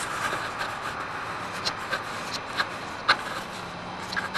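Steady outdoor background noise with a few short, sharp clicks, and a faint low hum that comes in near the end.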